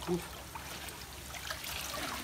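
Water trickling and dripping off a mesh hand net as it is lifted out of a pond.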